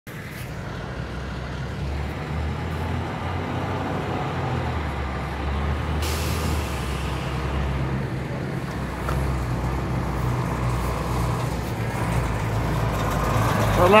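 Fire department aerial ladder truck's diesel engine running as the truck approaches, getting steadily louder. About six seconds in, a sudden hiss of air, like an air-brake release.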